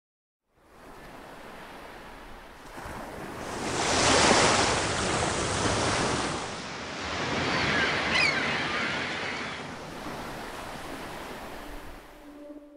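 Ocean waves washing in as a rushing noise that swells about four seconds in and again near eight seconds, then ebbs. There is a faint high warbling sound near the second swell.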